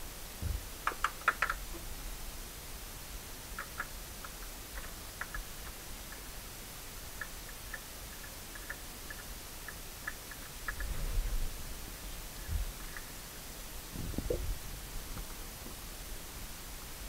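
Faint scattered clicks and rustles of a new spin-on oil filter being screwed onto its threaded mount by a gloved hand, with a few dull low bumps near the end.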